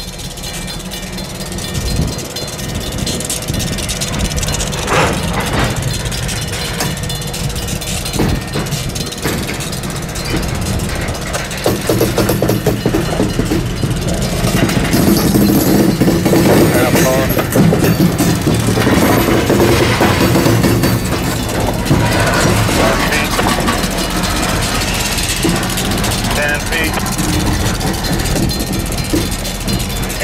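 Covered hopper cars rolling slowly past: steel wheels clattering and knocking on the rails, the rumble building to its loudest about halfway through.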